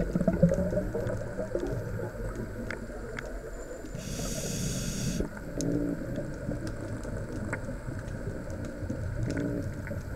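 A scuba diver's regulator heard underwater: exhaled bubbles gurgling and rumbling, with one hissing inhale breath about four seconds in.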